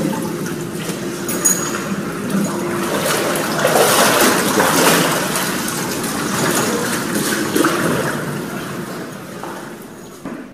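Water in a baptismal font sloshing and splashing as people move through it, swelling twice and fading toward the end.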